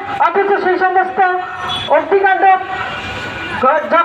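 Speech only: a woman speaking loudly into a handheld microphone in an impassioned address, with long drawn-out vowels.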